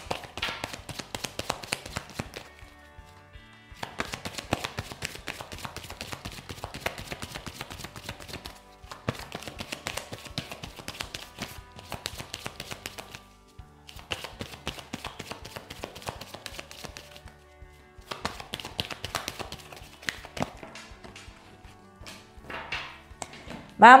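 Tarot cards being shuffled by hand: a rapid patter of card edges in stretches of a few seconds with brief pauses between them.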